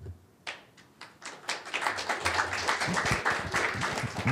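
Audience applauding: a few scattered claps about half a second in, building within a second to full, steady applause.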